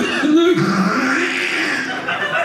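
A man's voice imitating someone hawking up and clearing phlegm from the throat: a rough, gargling throat noise held with a wavering pitch. It is the punchline of a pun on Flemish as a language of phlegm.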